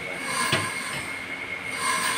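Steel drum machine for rubber granules running with a steady, squealing metallic whine that swells and fades about every second and a half, with a single knock about half a second in.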